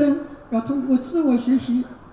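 Speech only: a man talking in Mandarin into a handheld microphone.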